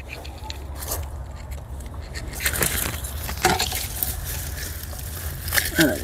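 Dry plant stems and leaves rustling and crackling as they are handled and pulled in a flower bed, with a few sharp clicks, over a steady low rumble.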